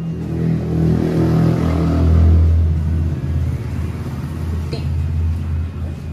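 An engine running nearby, swelling over the first two seconds and then holding steady at a lower level.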